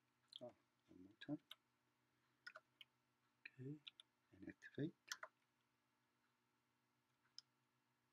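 Faint clicks of computer keyboard keys being pressed, in short irregular clusters with gaps between them.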